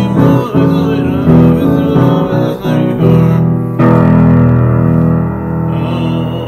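Solo piano playing a Purim tune in chords, the notes changing about twice a second, then a single chord held for about two seconds in the second half.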